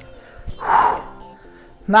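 A man's short, sharp exhale through the mouth, once about half a second in, with a shadowboxing punch, over soft background music.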